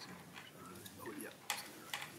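Quiet hearing-room tone with a faint, distant voice and two light clicks about one and a half and two seconds in.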